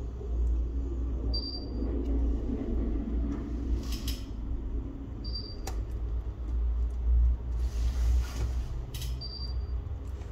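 Low steady rumble with scattered small clicks and taps of steel tweezers working on an iPhone's frame and connectors. A short high tone sounds three times, about every four seconds.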